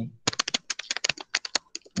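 Typing on a computer keyboard: a quick, irregular run of key clicks, several a second.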